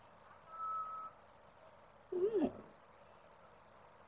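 A cat's short meow about two seconds in, rising then falling away; a brief high, steady tone comes just before it, about half a second in.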